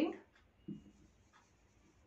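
Faint, scattered strokes of a felt-tip marker writing on a whiteboard, heard in a small room.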